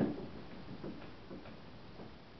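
A sudden knock, then three or four softer taps over the next second and a half, as a faint steady whine cuts off.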